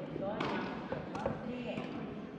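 Two sharp pops of a soft tennis rubber ball being hit and bouncing, about half a second in and just past one second, in a large indoor hall, with players' voices calling.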